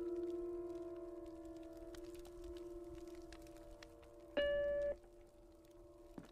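A steady electronic tone that slowly fades, then a short, louder, higher beep of about half a second near the end: a desktop computer's alert sounding as a chat request pops up on screen.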